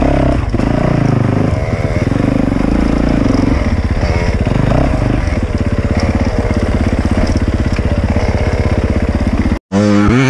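Dirt bike engine running loud and steady, heard from on board while riding a trail, with the revs stepping up and down a few times. The engine sound cuts off abruptly just before the end.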